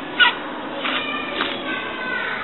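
A machete chopping into coconut husk: one sharp strike about a quarter second in, then two lighter strokes around a second in.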